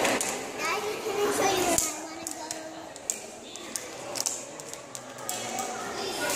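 Background chatter of museum visitors, children's voices among them, with a few small clicks and knocks.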